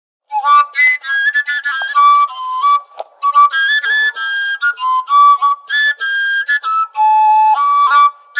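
Overtone flute (seljefløyte) playing a quick folk melody, starting about a third of a second in. Its notes leap between overtones in short, ornamented phrases with brief gaps between them.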